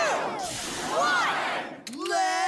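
Voices shouting a countdown, one word at the start and another about a second later ("two", "one"), over a steady hiss.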